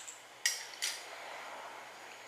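Two light, sharp plastic clicks about half a second apart as fingers press and seat a filter on a GoPro Hero 4's lens ring. Faint steady hiss after.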